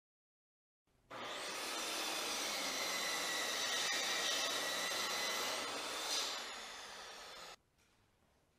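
Electric power saw making an angled crosscut through a wooden framing stud. It starts abruptly about a second in, its whine rising as the motor spins up, runs steadily, then the pitch falls near the end before the sound cuts off suddenly.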